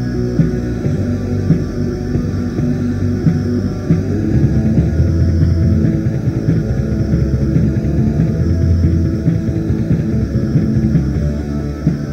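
Ambient raw black metal from a cassette demo recording: a dense, continuous, lo-fi wall of music that never lets up.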